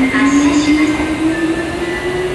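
Hankyu electric train pulling out of an underground platform, its motor whine climbing steadily in pitch as it picks up speed, over the rumble of wheels on rail.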